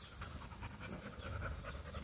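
A dog panting quietly, with two brief high squeaks, one about a second in and one near the end.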